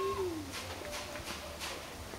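A short call that rises and falls in pitch at the very start, then a few footsteps on bare earth.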